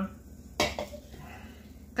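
A single sharp clink of kitchenware about half a second in, against quiet room tone.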